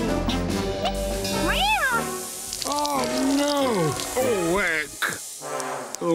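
A cartoon cat meowing several times, each call rising and falling in pitch, over background music.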